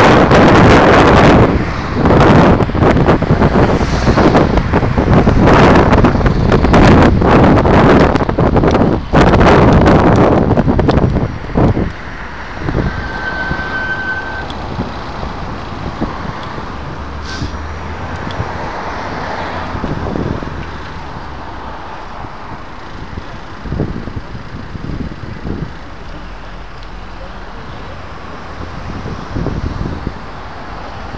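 Wind rushing over a bicycle-mounted camera's microphone while riding, with motor traffic passing. The wind noise is loud and dense for the first ten seconds or so, then drops away sharply about eleven seconds in, leaving quieter traffic sound.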